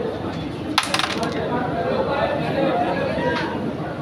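Carrom break shot: the striker hits the central pack and the wooden carrom men scatter with a quick clatter of clicks about a second in, over steady crowd chatter.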